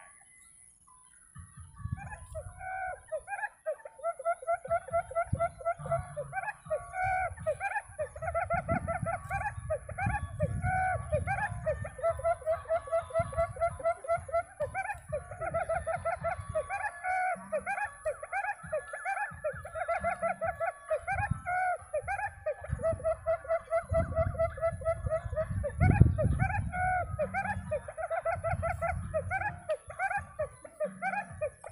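Quail calling in a fast, continuous run of short repeated notes, starting about a second and a half in. A low rumble comes and goes underneath, with one louder low thump near the end.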